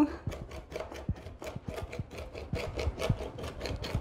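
Knife chopping fresh marshmallow roots on a board: a quick, irregular run of short knocks, several a second.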